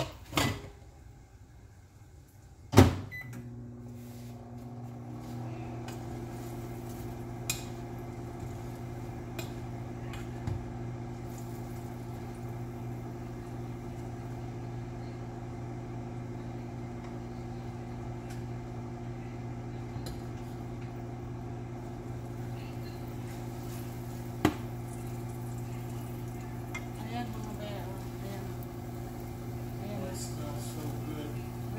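Microwave oven starting with a sharp click about three seconds in, then running with a steady low electrical hum. A few light clicks of utensils come over it.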